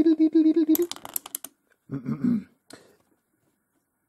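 A drawn-out, wavering hesitation sound from a man's voice, then a quick run of sharp clicks about a second in as the plastic and magnetic parts of a Mega Construx Magnext building-toy model are handled, followed by a brief mumble.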